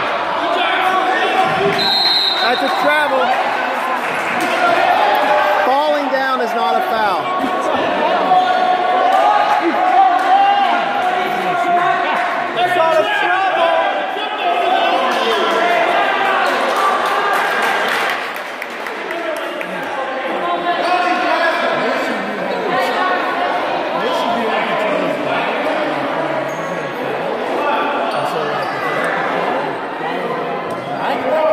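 A basketball bouncing on a gym floor amid many overlapping voices of players and spectators, all echoing in a large gymnasium. A short, high referee's whistle blast sounds about two seconds in.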